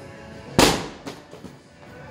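A 6 lb medicine ball hitting with one loud smack about half a second in, with a short echo after it.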